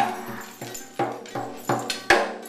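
A young child beating the tom drums of a red Excel drum kit with wooden sticks: about six uneven, untimed strikes, each ringing out briefly.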